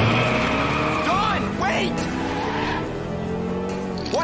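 Cartoon sound effect of a sports car peeling out: tyres squeal and the engine note rises steadily as the car speeds away.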